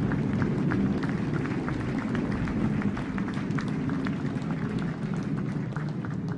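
Audience applauding: a dense patter of many hands clapping unevenly, over a low rumble.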